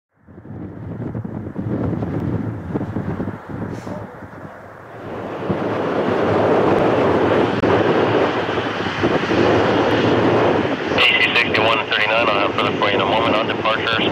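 British Airways Boeing 787 Dreamliner on short final, the noise of its Rolls-Royce Trent 1000 engines swelling about five seconds in and staying loud as it nears touchdown. Air traffic control radio speech joins in over it near the end.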